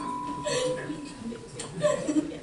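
An electronic keyboard's last held note dying away, with short bursts of laughter from the young player, one about half a second in and another near the end.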